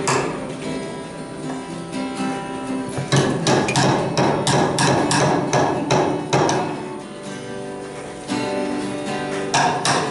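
Hammer striking nails into a wooden log: a quick run of blows, about three a second, starting about three seconds in, and two more near the end. Acoustic guitar music plays underneath.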